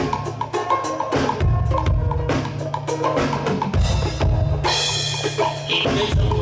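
Live band playing an instrumental groove: a drum kit with bass drum and snare keeps a steady beat under a heavy bass line and short repeated pitched notes. The sound turns brighter and hissier for the last second or so.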